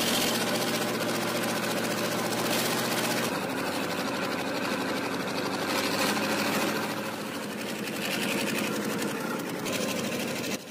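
Tracked all-terrain vehicle's engine running steadily under load with a fast mechanical clatter as it works through deep mud and water.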